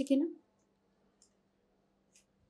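A woman's spoken line ends within the first half second, then near silence with a faint steady hum and a single faint click about a second in.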